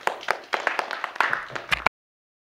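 A small group of people clapping, quick and uneven, which cuts off suddenly near the end.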